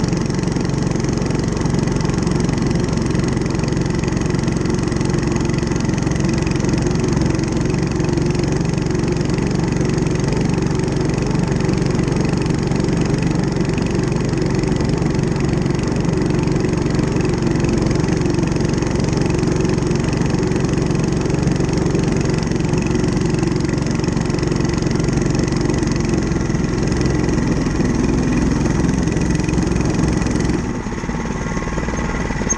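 Mini bike's small engine running steadily under load as the bike climbs a hill.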